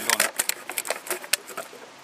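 The sharp edge of a stainless steel Coast Hunter survival knife cutting around a thin plastic drinks bottle: a quick, irregular run of crackling clicks that thins out after about a second and a half.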